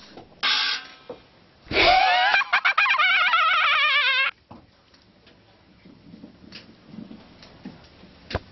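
A whimsical sound effect. A short hiss comes about half a second in, then a rising glide turns into a warbling, wobbling tone for about two and a half seconds and stops abruptly. Faint room sound follows.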